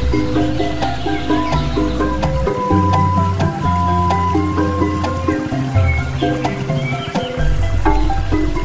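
Background music: an instrumental melody moving in short stepped notes over a bass line that changes note every second or so.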